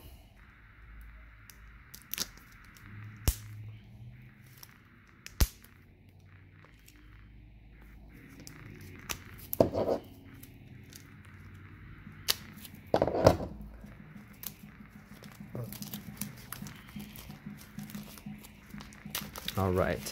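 Clear plastic shrink wrap on a toy capsule being slit with a small knife and peeled off: scattered soft crinkling and crackling with a few sharper cracks, the loudest about ten and thirteen seconds in.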